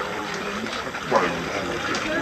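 Liquid poured in a steady stream from a plastic jerrycan into a glass bottle, filling it.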